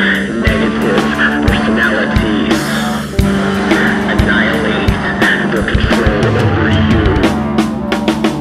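Instrumental passage of a rock song: electric guitar and drum kit playing a steady beat, with a brief break about three seconds in.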